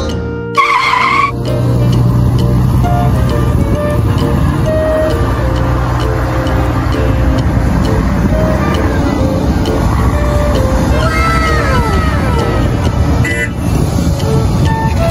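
Heavy machine engine sound effect running steadily under background music, with a short pitched tone about half a second in and several falling whines in the last few seconds.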